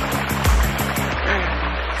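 Background music with a steady beat that stops about a second in, over pool water splashing and churning as a small child kicks across the swimming pool.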